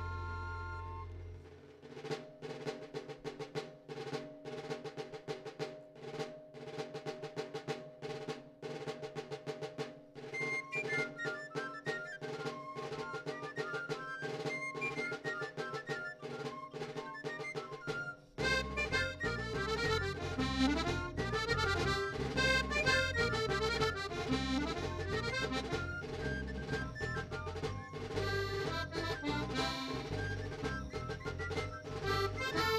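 Live band music with a steady percussion beat. A melody joins about ten seconds in, and the full band comes in louder with bass after about eighteen seconds.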